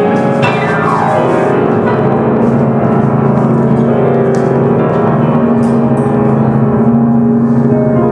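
Piano played live: a quick run sweeping down the keyboard about half a second in, then low chords held and rolling on.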